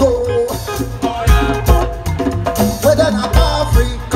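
A live Afrobeat band playing an upbeat groove with saxophones, electric guitar and bass, keyboard, drum kit and a hand drum, over a steady drum beat.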